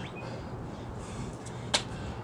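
A single sharp slap about three quarters of the way in: sneakers hitting the concrete as the feet are jumped in during a burpee. A low steady hum runs underneath.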